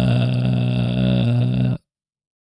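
A man's long, drawn-out "uhhh" hesitation sound, held at one low, flat pitch for nearly two seconds and cut off abruptly near the end.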